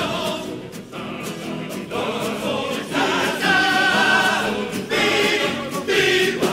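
Large Cádiz carnival coro singing in full chorus, backed by its plucked-string band of guitars and bandurrias. It is softer at first and swells louder about three seconds in.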